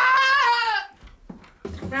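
A high-pitched, drawn-out wailing cry that tails off just under a second in, followed near the end by a woman's voice on a telephone.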